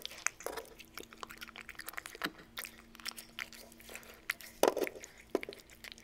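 Cat-eating sound effect: irregular small crunches and chewing clicks, with a faint steady hum under the first two-thirds.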